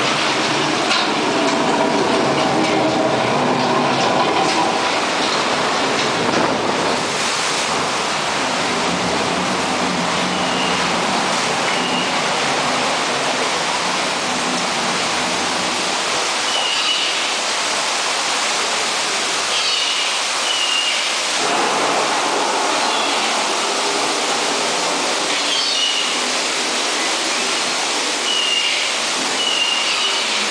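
Loud, steady rushing of water through a boat ride's flume in the dark, like a waterfall, with a few short high squeaks over it from about a third of the way in.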